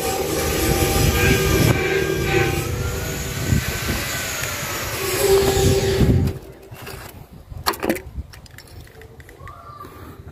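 A machine's engine running steadily nearby, its pitch drifting slowly up and down, cuts off suddenly about six seconds in. After that come a few light metallic clicks as a radiator filler cap is twisted off.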